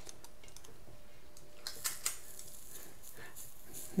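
Faint, scattered clicks and scrapes of a metal portion scoop working through ground chicken in a stainless steel mixing bowl.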